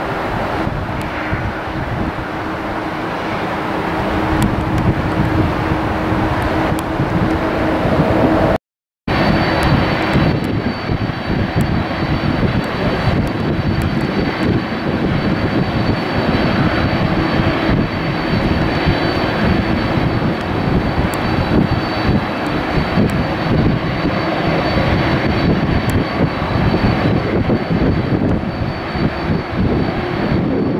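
Airliner jet engines at taxi power: a steady rumble. The sound breaks off for a moment about nine seconds in. After the break it is louder, the engines of a KLM Boeing 747 taxiing past, with a thin high whistle held over the rumble.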